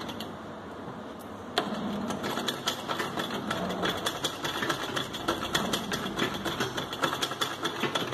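Simple domestic sewing machine stitching machine embroidery on fabric held in a hoop, filling a motif with close running stitches as padding for raised satin stitch. It is quieter at first, then picks up sharply about one and a half seconds in into a steady run of rapid needle strokes.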